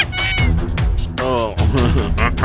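Background music, with a high, mewing animal cry that falls in pitch a little over a second in.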